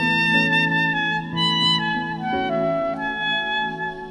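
Slow relaxing instrumental music: a saxophone plays a melody of long held notes over a sustained backing chord.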